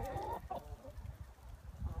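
Backyard chickens clucking: a short pitched call in the first half-second, then fainter clucks.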